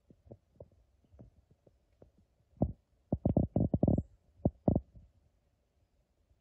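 Dull, low thumps and knocks from a handheld camera being handled and carried. A few light ones come first, then a quick run of louder ones in the middle.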